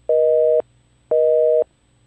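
Telephone busy signal: a steady two-note beep that cuts on and off evenly, half a second on and half a second off, sounding twice.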